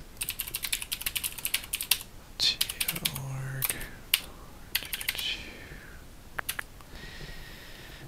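Computer keyboard typing: a quick run of keystrokes for the first two seconds, then scattered keys and a few single clicks.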